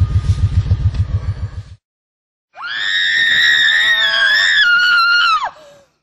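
A low, pulsing rumble that fades out, then after a brief silence a loud, long human scream lasting about three seconds that falls off and cuts out near the end.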